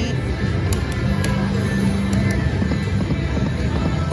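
Eureka Reel Blast video slot machine spinning its reels, its spin music playing over a steady din of casino noise, with a held low tone in the middle and a few faint clicks.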